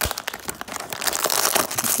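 Crinkly plastic blind bag being slit open with a knife and pulled apart by hand: a run of sharp crackles and rustles, densest in the second half.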